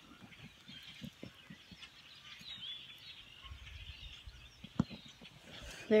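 Quiet handling and rustling of a phone being swung over grass, with small ticks, a low rumble in the second half and one sharp click near the end. Faint distant bird calls come in about halfway.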